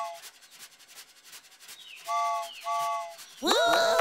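Cartoon steam-train sound effect: rapid, even chuffing, with two short toots of a chord steam whistle about two seconds in. Near the end a voice cries 'woo-hoo'.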